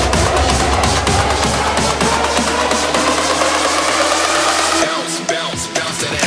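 Instrumental section of a big room electro house track: a driving electronic beat over heavy bass, with a synth line rising slowly in pitch. About five seconds in, the bass drops out.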